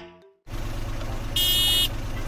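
A steady engine-like rumble sound effect, for a toy vehicle setting off, comes in about half a second in, with a short high buzzing beep about halfway through.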